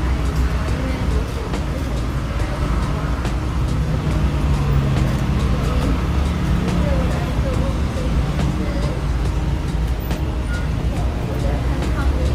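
A woman's voice talking tearfully, choked with crying, over a steady low rumble of background noise.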